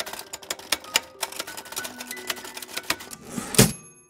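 Typewriter sound effect: a quick run of key strikes, several a second, ending about three and a half seconds in with a louder carriage-return clatter and a bell ding.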